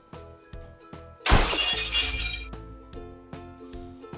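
A glass-shattering sound effect: one sudden crash about a second in, then tinkling shards for about a second, laid over background music.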